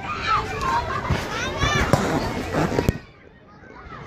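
Children's voices calling and shouting over a general hubbub, with no clear words. A sharp knock comes just before three seconds in, after which the sound drops away sharply.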